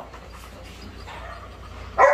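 Faint dog sounds over a low, steady background hum, with no clear barks.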